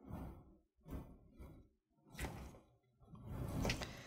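A few faint, brief soft rustles from gloved hands and plastic IV tubing being handled, with a longer rustle near the end.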